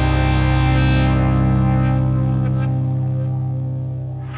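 A distorted electric guitar chord held and ringing out in a heavy rock song. The high end dies away about a second in, and the whole sound slowly fades.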